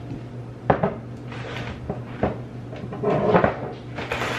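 Glass jars with metal lids knocking as they are set down and handled on a kitchen counter: a sharp knock about three-quarters of a second in, another about two seconds in, and a short run of clatter near the end.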